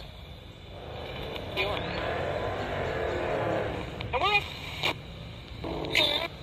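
A vehicle passing by: a rushing noise that swells over about two seconds and then fades, a disruptive noise over the session.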